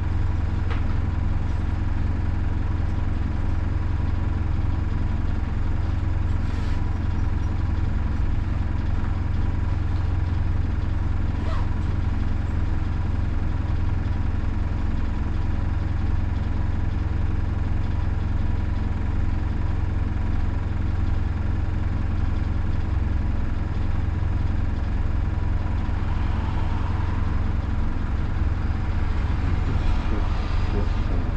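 Hino Poncho small bus's four-cylinder diesel engine idling steadily, heard from inside the cab as a low, even hum while the bus is stopped, with a few faint clicks.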